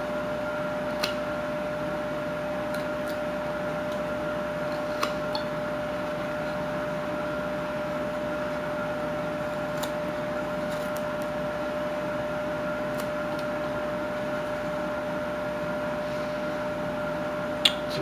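A carving knife paring chips from a wooden figure, heard as a few faint scattered clicks over a steady hum with a constant mid-pitched tone.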